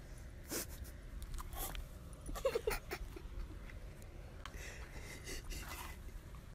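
Two dogs play-wrestling, with scuffs and short dog vocal sounds, loudest about two and a half seconds in. A steady low rumble runs underneath.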